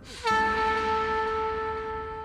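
A single long horn-like note, starting with a brief slide down in pitch and then held steady, slowly fading.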